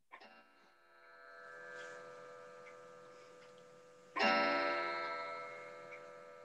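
Sustained musical chords from an instrument: a soft chord swells up about a second in and slowly fades, then a louder chord sounds about four seconds in and rings out, slowly decaying.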